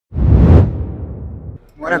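A whoosh sound effect with a deep rumble under it. It comes in suddenly at the start and fades away over about a second.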